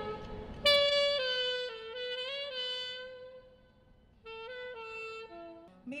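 Solo saxophone playing a slow melodic phrase: long held notes that fade out about three and a half seconds in, then, after a short pause, a few shorter notes.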